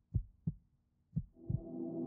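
Logo sting sound design: low heartbeat-like thumps in pairs, then a sustained ringing, gong-like chord swells in about a second and a half in.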